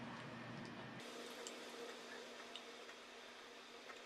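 Faint, soft squishes and a few small ticks of a liquid lipstick's wand applicator being worked over the lips, over quiet room tone.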